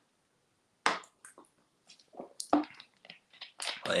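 Thin plastic water bottle crackling as it is handled after a drink: one sharp crackle about a second in, then a few smaller crackles and clicks. A man's voice starts again near the end.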